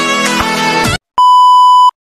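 Intro music that cuts off about a second in, then, after a brief gap, one loud, steady, high electronic beep lasting under a second.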